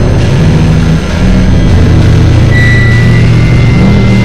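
Loud, dense noise music: a thick low drone of layered pitches over a rough haze, with a thin steady high tone coming in about halfway through.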